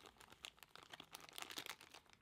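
Faint crinkling of a clear plastic parts bag being handled and opened, a quick run of small crackles.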